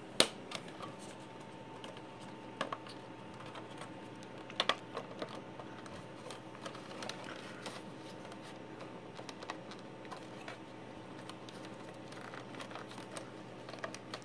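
Clicks and taps of hard plastic being handled as a tight-fitting 3D-printed mic and USB holder is worked out of a plastic dash bezel by hand. There is one sharp click just after the start, small clusters of clicks about two and a half and four and a half seconds in, and scattered faint ticks over a faint steady hum.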